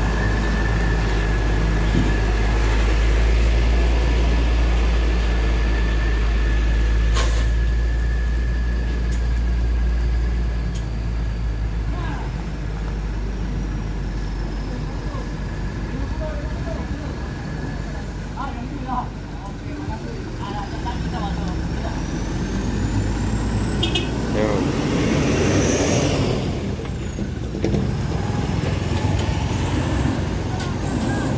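Diesel engine of a Hino FL235Ti cargo truck running at low revs as the truck crawls past on a soft dirt road, a heavy rumble that fades after about ten seconds. A second passing-vehicle noise swells and dies away about three-quarters of the way through.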